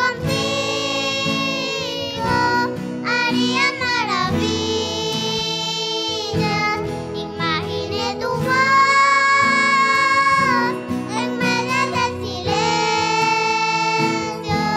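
Two young girls singing a Christian song together into microphones over instrumental accompaniment, holding long notes of a second or two with slides in pitch between them.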